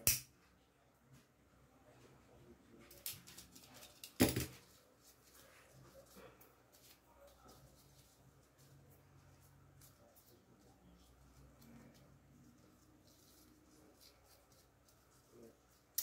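A pocket lighter struck, with a small click about three seconds in and a sharp click just after four seconds, among faint rustling of ribbon being handled.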